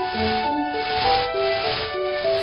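Background music with a stepping melody of short held notes, with the scratchy swish of straw brooms sweeping underneath.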